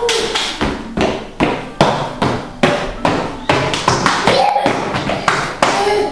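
A child's steps in oversized adult shoes clomping on a ceramic tile floor: a quick, uneven run of knocks, two or three a second.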